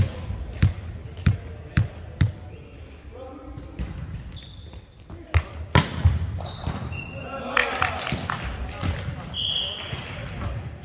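A volleyball bounced on a hardwood sports-hall floor five times, about two a second, then two sharp hits of the ball about five and a half seconds in as play starts. Players' voices and short high squeaks follow in the echoing hall.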